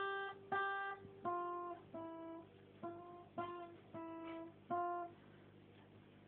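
Acoustic guitar picked one note at a time by a beginner: a slow, simple tune of about eight single plucked notes, two higher ones and then a run of lower ones, each left to ring. The playing stops about five seconds in.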